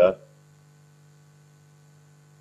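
Faint steady electrical hum, a low even buzz with a few fainter higher tones above it, unbroken and unchanging.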